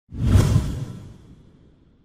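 A whoosh sound effect from an animated intro. It comes in sharply just after the start, is heaviest in the low end, and fades away over about a second and a half.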